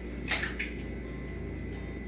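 An eggshell cracking open over the mixing bowl: one short crackle about a third of a second in, then only a low steady hum.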